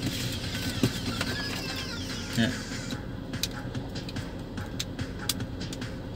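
Scattered small plastic clicks and handling noise from a dash cam and its USB cable and plug being turned over in the hands, over steady background noise.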